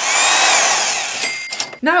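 Edited transition sound effect between segments: a loud whooshing rush with whining tones that fall in pitch over about a second and a half. It ends with a click and a brief steady beep.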